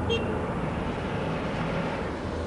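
A steady rumbling noise, strongest in the low end, with a brief faint tone right at the start.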